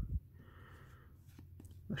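Quiet handling of a stack of glossy trading cards as one card is slid off the front of the pack: a soft low bump at the start, then faint card rustle with a few light clicks about one and a half seconds in.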